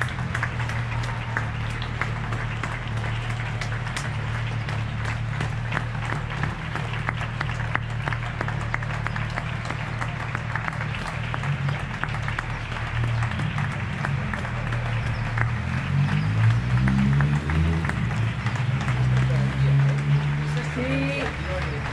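Applause: hands clapping steadily close by, with other people clapping around.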